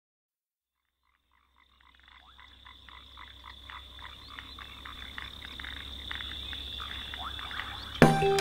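A nature ambience of many short animal calls repeating several times a second over a steady high-pitched drone, fading in from silence after about two seconds and growing louder.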